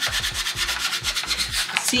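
Masking tape being burnished down onto painted wood with a small hand tool, rubbed in quick, even scraping strokes to make the tape stick.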